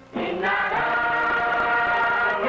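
Choir singing as background music: after a brief dip at the start, the voices come in and hold a steady chord.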